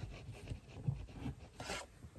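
Faint rubbing and scraping handling noises, a few short scrapes and ticks, as the camera setup is adjusted by hand.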